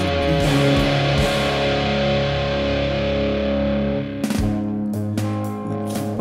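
Alternative rock song in an instrumental passage: held, distorted electric guitar chords over a low bass, with a few sharp hits coming in about four seconds in.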